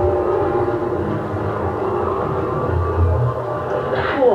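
Electronic incidental music from a 1966 television serial's soundtrack: several steady, held tones over a low hum that swells about three seconds in.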